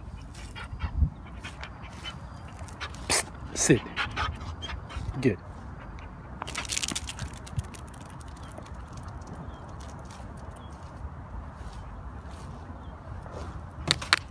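A dog whimpering briefly among short spoken commands. About seven seconds in there is a short rustle, then a steady faint outdoor hiss.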